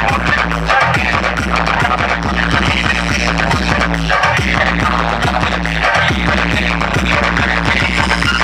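Loud Indian DJ dance music with heavy bass and a steady pounding beat, blasted from a vehicle-mounted stack of large loudspeakers.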